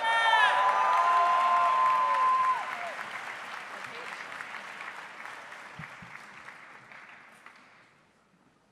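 Audience applauding a graduate, with loud cheers and whoops over it for the first two and a half seconds; the applause then dies away gradually.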